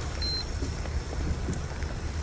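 Steady low wind rumble on the microphone with rolling noise from an electric recumbent trike moving along a paved path.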